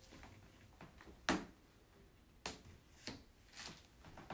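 A few separate sharp clicks and knocks, the loudest just over a second in: an aluminium rod and the plastic cage knocking together as the rod is pushed through the cage's holes during assembly.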